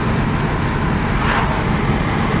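Steady road and engine noise heard from inside a moving car's cabin, with a brief whoosh about halfway through as an oncoming car passes.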